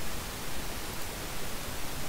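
Steady hiss of a voice-over microphone's background noise, with no other sound.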